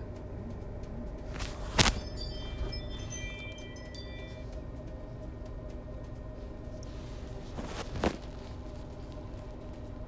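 A sharp click about two seconds in, followed by a few high chime-like ringing tones that die away over a couple of seconds, over a steady hum. A second, softer click comes near the end.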